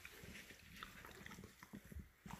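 Faint chewing with small scattered clicks: dogs eating training treats.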